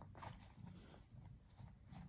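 Near silence, with a few faint soft rustles of hands handling a leather clutch.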